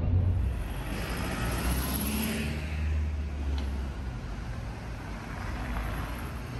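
City street traffic: a low engine rumble with tyre and road noise from passing vehicles, swelling about two to three seconds in and then easing.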